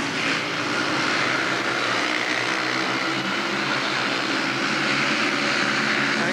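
Several 500cc single-cylinder speedway motorcycle engines running flat out together as the riders race round the track, a steady, layered engine drone.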